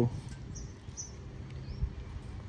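Quiet outdoor background: a faint steady low hum with a few short, high-pitched bird chirps.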